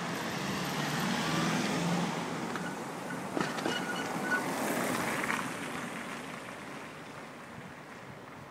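City road traffic passing close by, a car going past in the first few seconds, with a few faint clicks about three and a half seconds in; the traffic sound fades toward the end.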